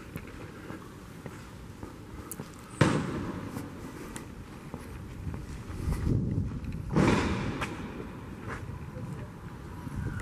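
Outdoor city-street ambience heard while walking with a handheld camera, with a sudden loud noise about three seconds in and another louder swell about seven seconds in.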